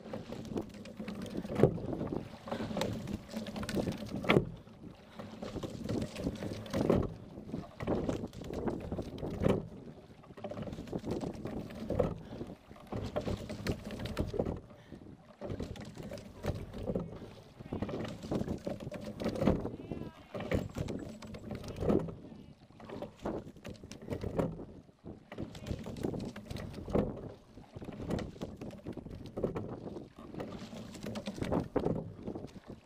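Single racing scull being rowed steadily: knocks from the oars and rigging come with each stroke, about every two and a half seconds, over the rush of water along the hull.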